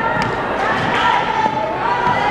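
Indistinct voices echoing in a large gymnasium, with a sharp knock just after the start.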